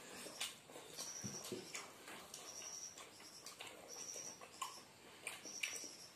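Close-miked eating sounds of chicken curry and rice eaten by hand: soft mouth clicks and chewing. A faint high-pitched chirp repeats about every one and a half seconds throughout.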